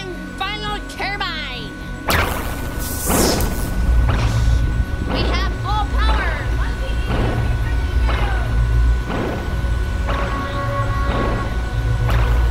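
Spaceship launch rumble: a sudden blast about two seconds in, then a loud, steady low rumble with repeated crashes over it, as the homemade ship's third turbine is engaged.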